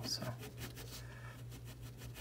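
Pencil scratching on drawing paper in a quick run of short, faint strokes, over a low steady hum.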